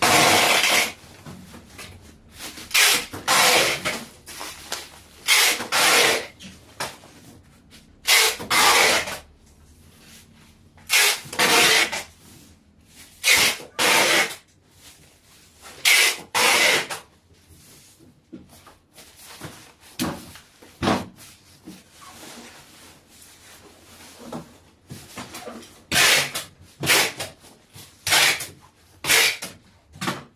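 Black bubble wrap and a white plastic sheet crinkling and rustling as they are folded and laid over a boxed item, in about a dozen short bursts with quieter gaps between them.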